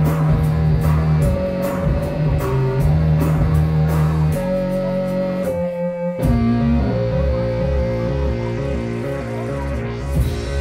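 Live instrumental music from electronic keyboards and drums: a sustained synth bass and held tones under a regular beat of cymbal strokes. About five and a half seconds in, the bass drops out for a moment, then returns as a faster pulsing pattern.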